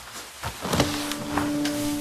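Dramatic background score fading in with a rising swell, then a low sustained note that enters about a second in and holds.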